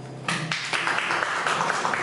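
The tail of a held electric keyboard chord fading out, then, about a quarter second in, audience applause breaks out suddenly and carries on.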